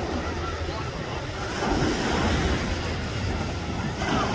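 Small waves breaking and washing up the sand, with wind buffeting the microphone as a steady low rumble. Faint voices of beachgoers sit in the background.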